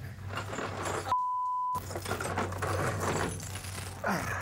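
A single censor bleep: one steady high beep, just over half a second long, about a second in, with all other sound cut out beneath it. Around it, background noise with a low hum.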